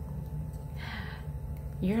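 A woman's short, sharp intake of breath through the mouth about a second in, then the start of her speech near the end, over a steady low hum.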